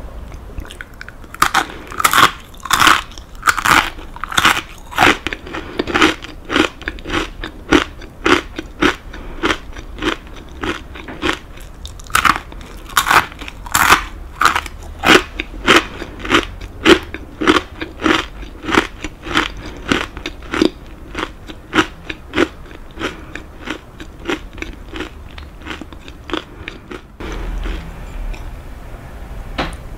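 Close-miked chewing of crunchy kaki-no-tane rice crackers: crisp crunches about two a second. They are loudest in the first few seconds and again around the middle, grow softer later, and stop just before the end.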